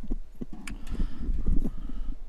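Footsteps on a hard stage floor, a quick irregular run of knocks and thumps, over low rumble from the handheld camera being carried.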